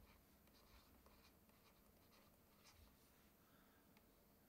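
Very faint, irregular scratches and taps of a stylus writing on a tablet, otherwise near silence.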